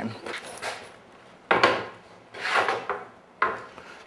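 Pieces of wood sliding and rubbing against wood: three short scrapes, the first and last starting sharply, each fading within about half a second.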